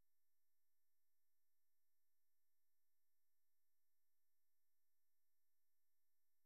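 Near silence, with the audio cut out between stretches of speech.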